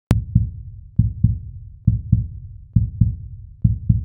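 Low, deep thumps in pairs, like a beating heart, about one pair every 0.9 seconds and five pairs in all, opening with a sharp click.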